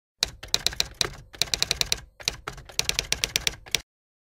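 Typewriter keys clacking in three quick runs of keystrokes, cutting off abruptly just before the end.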